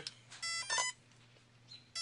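A brushless RC car speed controller (Kershaw Designs 280 A ESC) giving a couple of short electronic beeps about half a second in, its power-up tones as a LiPo battery is connected.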